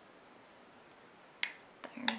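Near silence, then one sharp click about one and a half seconds in and a fainter click just before the end.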